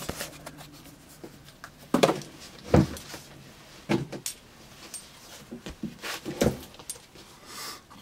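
Handling noise: a few soft knocks and rustles as hands move a paper card, a box and a leather knife sheath on a cloth-covered table, the loudest a dull thump about three seconds in.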